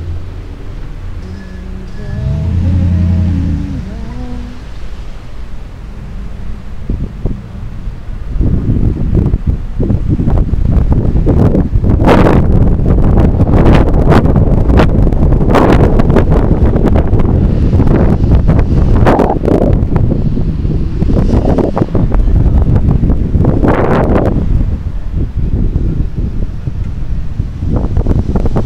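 Wind buffeting the microphone of a bicycle-mounted camera while riding in city traffic, much louder from about eight seconds in. Before that the street noise is quieter, with a short pitched sound rising and falling about three seconds in.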